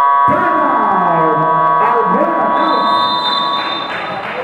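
Basketball scoreboard buzzer sounding one long steady tone that cuts off near the end, with voices shouting over it.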